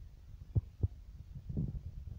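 Microphone handling noise from a handheld phone being swung around: a low rumble with three dull thumps, the first two close together and the third near the end.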